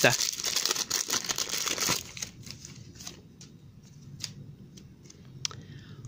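Foil trading-card packet torn open and crinkled for about two seconds, then softer rustling and clicks as the cards are pulled out and handled.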